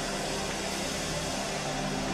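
Soft held chord of background worship music, faint low steady tones that shift slightly partway through, under a steady hiss.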